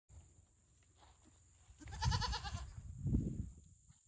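A goat bleating once, a short quavering call about two seconds in, followed by a low muffled rumble about a second later.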